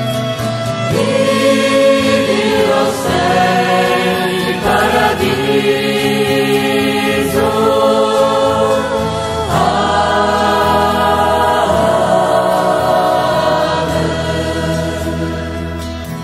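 Choir singing a sacred hymn in long held notes, easing off slightly near the end.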